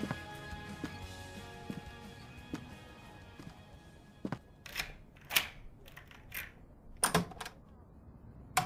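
The end of a song fading out, sustained chords with a soft tick about once a second dying away over the first few seconds. Then a handful of sharp, irregular knocks and thuds in the second half, like handling or movement sounds added after the song.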